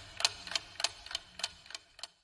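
Clock-ticking countdown sound effect: evenly spaced ticks, about three a second, stopping just at the end, timing the pause for answering a quiz question.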